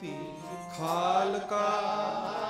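Gurbani kirtan: a man's voice singing a Sikh hymn over a steadily held harmonium, with a new phrase swelling in with vibrato about a second in.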